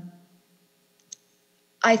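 A pause in a woman's speech, broken by a single short click about a second in; she starts talking again near the end.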